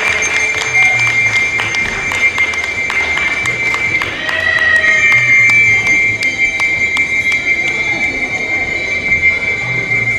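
Music with a low pulsing beat, under a steady high-pitched whine that holds throughout, with many sharp clicks on top.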